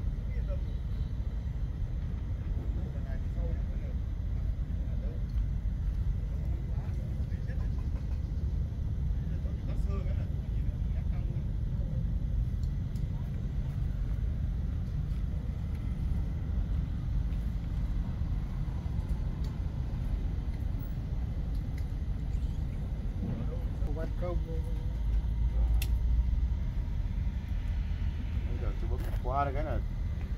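Steady low outdoor rumble of background noise, with faint distant voices now and then and a single brief click near the end.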